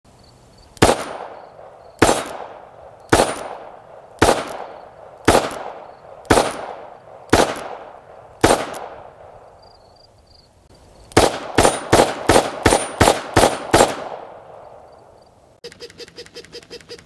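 Rock Island Armory AL22M .22 Magnum revolver firing: eight single shots about a second apart, then after a short pause a faster string of shots, about three a second. In the last moment a rapid clicking begins.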